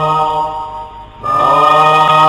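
Slow, sustained chanting in the style of traditional Japanese court music. A long held note fades away about halfway through, then a new note starts with an upward slide in pitch and settles into a long held tone.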